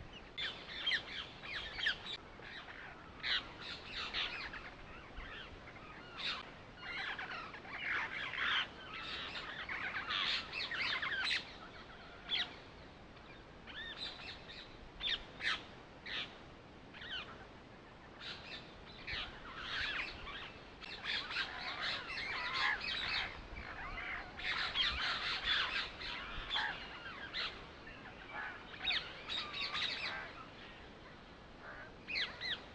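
Birds chirping and calling: many short chirps in quick clusters, with brief lulls between bouts.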